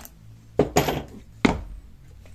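Three sharp knocks of hard objects being knocked together or set down: two close together about half a second in, and a third about a second and a half in.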